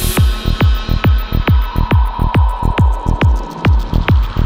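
Dark progressive psytrance: a steady, evenly spaced kick drum with pulsing bass. The high hiss layer cuts out just after the start, and a steady high tone comes in about halfway through.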